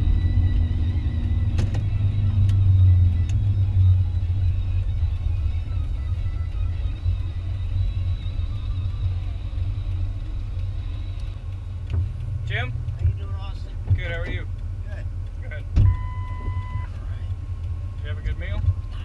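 Ford F-150 pickup driving, its engine and road rumble heard from inside the cab, heaviest in the first few seconds. A faint steady high tone fades out about two-thirds of the way through, and a short beep sounds near the end.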